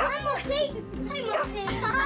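Excited children's voices calling and squealing in greeting, over upbeat theme music with a steady bass.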